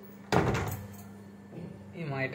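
A door shut with a single loud bang about a third of a second in, dying away quickly.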